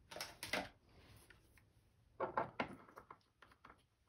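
A few short knocks and scrapes of handling: a crankbait on its holding stick being set down into a wooden block stand. There is a cluster right at the start and a louder one about two seconds in, then a few lighter clicks.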